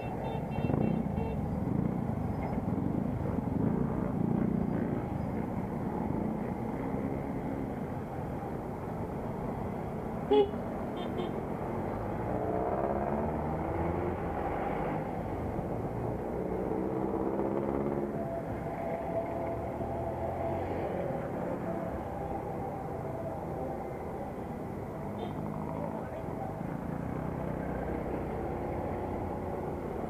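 Motorcycle engine running with road and wind noise while riding in traffic. One short horn beep about ten seconds in. From about halfway through, the engine pitch rises twice as it speeds up through the gears.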